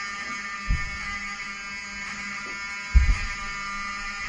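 Hotel fire alarm sounding: a steady, buzzing tone. Two dull low thumps come through it, one under a second in and a louder one at about three seconds.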